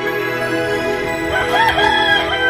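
Background music with held chords; about a second and a half in, a rooster crows over it in one call that rises, holds and falls away.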